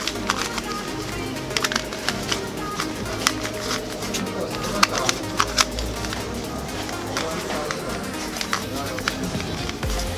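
Quick, irregular clicks of a YJ Yuanfang 2x2 puzzle cube's layers being turned by hand, over background music.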